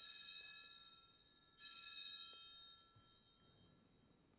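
Altar bells rung at the elevation of the chalice, marking the consecration. Two rings, one at the start and another about a second and a half in, each a cluster of bright, high tones that fades away over about a second.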